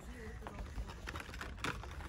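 Light clicks and rustles of packaged putty tins being handled on a wire display rack, over a low background hum, with a slightly louder knock about one and a half seconds in.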